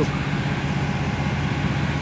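Turbocharged car engine idling steadily.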